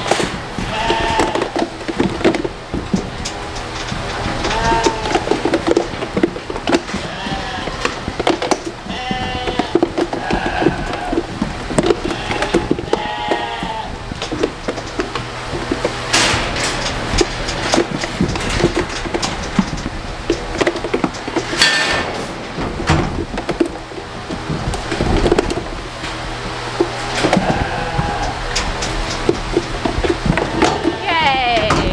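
Lambs bleating over and over as they move through a steel handling chute, with occasional sharp knocks and clangs, the loudest about 16 and 22 seconds in.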